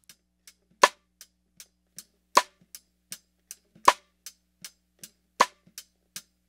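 Snare drum cross-stick rim click from its top and bottom microphones, EQ'd heavily toward the mids and compressed: four hard, mid-heavy clicks about a second and a half apart. Fainter hi-hat ticks bleed through in an even pulse between the clicks.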